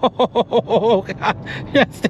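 A man laughing in a quick run of short bursts, then exclaiming "yes, yeah", in excitement at hard acceleration, over low road noise inside the car's cabin.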